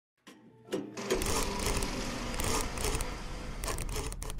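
A small machine clattering rapidly and continuously, starting about a second in after a couple of clicks.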